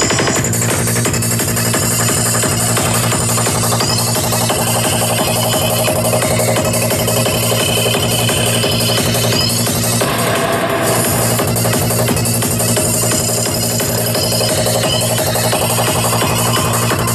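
Psytrance DJ set playing loud and continuous, dense electronic music with a steady driving beat.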